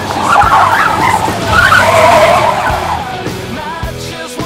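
Car tyres squealing and skidding on parking-lot pavement in two long swells that fade near the end, with music underneath.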